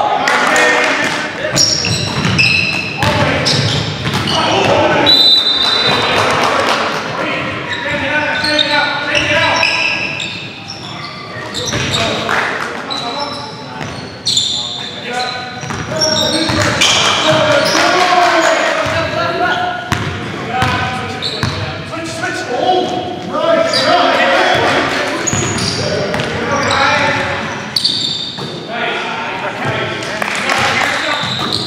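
Basketball being dribbled and bounced on a hardwood gym floor during play, over players' and onlookers' voices calling out throughout. It all echoes in the large gymnasium.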